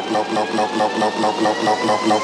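Progressive psytrance: a fast synth pattern repeats several times a second under thin tones that slowly rise in pitch, with no deep bass.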